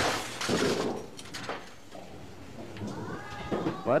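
Bowling alley lane noise: two loud clattering crashes of pins and balls in the first second, then a bowling ball rolling down the wooden lane with a few knocks, and faint voices near the end.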